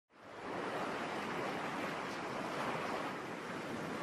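Sea surf: a steady rush of waves, fading in from silence at the start.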